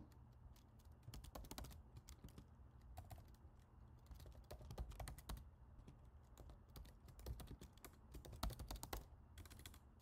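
Faint typing on a computer keyboard: irregular runs of keystrokes with short pauses between them.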